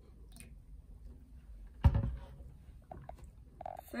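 Water poured faintly from a plastic bottle into a small plastic cup, then the plastic bottle set down on the table with one sharp knock about two seconds in. A few light clicks follow.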